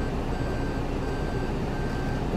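A Toyota Alphard's in-cabin parking warning beeps repeatedly at one steady pitch while the car is manoeuvred close to the kerb, over a steady low rumble.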